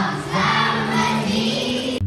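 Children's choir singing together, many young voices on a held sung phrase.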